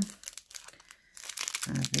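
Clear plastic packet crinkling as it is handled, in light intermittent rustles that grow busier about a second in.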